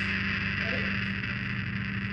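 Steady electrical hum with a high hiss from live band amplification, and a faint brief voice about half a second in.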